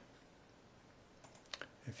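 A few faint computer mouse clicks in quick succession a little over a second in, otherwise near silence.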